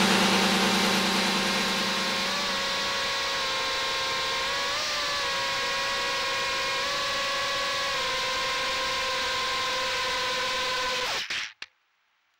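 Brushless motors and 3-inch propellers of a 6S FPV miniquad running: a steady whine over a haze of air noise, rising slightly in pitch a few times. The sound cuts off suddenly near the end.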